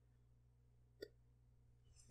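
Near silence with a low steady hum, broken by a single faint click about halfway through.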